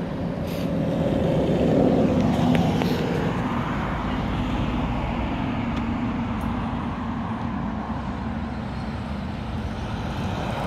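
Steady engine rumble of a passing motor vehicle, swelling about two seconds in and easing off slowly.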